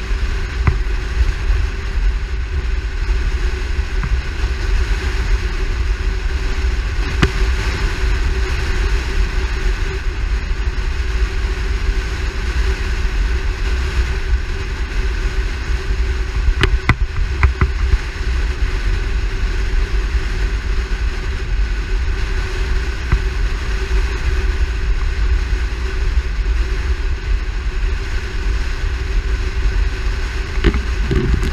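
Wind buffeting a camera mounted on the hood of a moving car, with the car's steady road and engine noise underneath.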